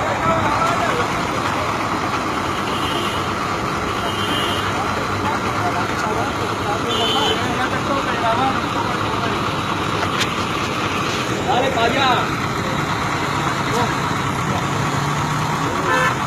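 Street commotion: overlapping raised voices of several people over running vehicle engines, with a few short car-horn toots.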